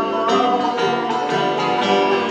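Bluegrass band playing live: strummed acoustic guitars and banjo over bass, with a man singing lead.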